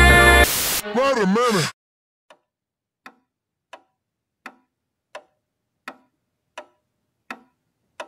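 Music cuts off, a brief warbling, wavering sound follows, and then a wall clock ticks slowly and evenly, about one tick every three quarters of a second, in otherwise near-silence.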